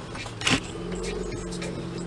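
Steady hum inside a moving car's cabin, with a short handling knock on the dash-mounted camera about half a second in.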